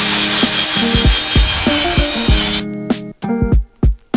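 Power drill with a paddle mixer whirring as it stirs concrete floor patch in a plastic bucket, stopping abruptly about two-thirds of the way through. Background music with a steady beat plays throughout.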